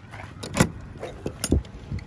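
Padlock and metal slide latch on a wooden shed door being unlocked and the door opened: a sharp metallic click about half a second in, then a quick run of clicks and knocks about a second and a half in.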